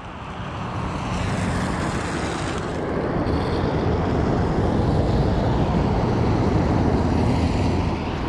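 Steady rushing outdoor noise on a wet, rainy waterfront, building over the first second or so and then holding level, with no distinct events.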